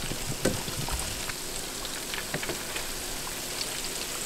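Hot oil sizzling steadily in a frying pan of battered fish fillets, with scattered light crackles.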